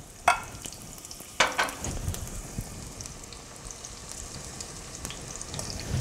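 Onions and celery sautéing in melted ghee with a steady sizzle, and two brief clatters, about a third of a second and a second and a half in, as the chopped celery is tipped and scraped from a bowl into the pot.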